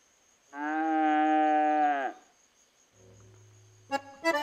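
A cow mooing once: a single held call of about a second and a half that drops in pitch as it dies away.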